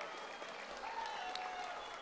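A crowd applauding, faint and steady.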